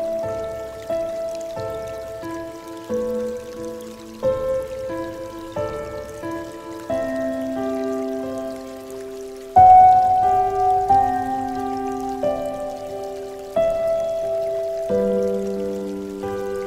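Slow, gentle solo piano music: soft chords and single notes struck about once a second and left to ring and fade, with a louder chord about halfway through.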